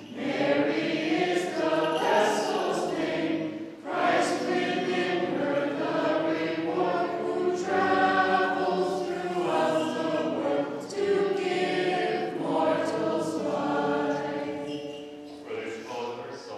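Group of voices singing a liturgical chant together, in sustained phrases of a few seconds each with short breaks between.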